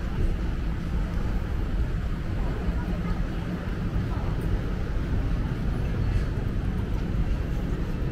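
Steady low rumble of city street background noise, even throughout with no distinct events.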